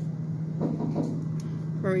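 Steady low hum of a running chest freezer, with brief handling noises from frozen-food packages.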